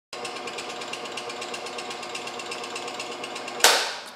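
Scroll saw running with a rapid, even chatter. Near the end it cuts off with a sudden loud thump.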